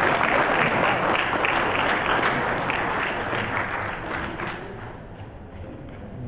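Audience applauding, the clapping dying away about four to five seconds in.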